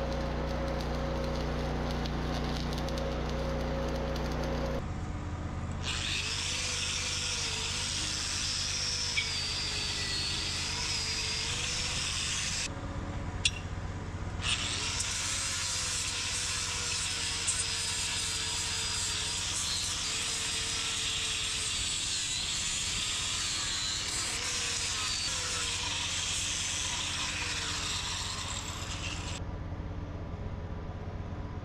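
Wire-feed welding arc crackling and hissing in two long runs, with a short break about 13 seconds in. A steady machine hum sounds under the first few seconds before the welding starts.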